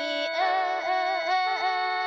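Isan lam music: a khaen mouth organ holding steady drone notes under a wavering, ornamented melody line.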